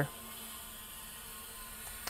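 Faint steady hiss with a low hum underneath, unchanging throughout.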